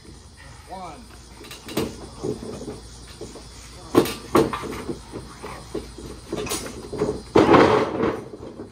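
Wrestlers' bodies hitting a portable wrestling ring's mat: a few sharp knocks, then the loudest, longer crash of a body landing near the end.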